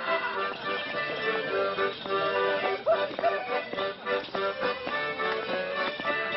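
Live accordion playing a lively folk dance tune, its steady reed chords carrying the melody.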